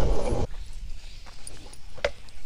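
Skateboard wheels rolling on asphalt, stopping about half a second in. After that come a few light taps and scuffs on dirt.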